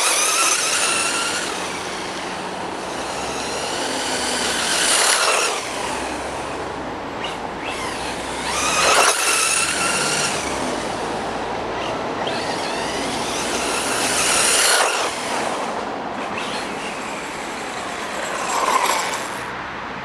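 FTX Vantage 1:10 brushless RC buggy's 540-size brushless motor whining as it drives, the high whine climbing and falling in pitch with the throttle. It swells loudest as the buggy passes close, about five, nine and fifteen seconds in and again near the end.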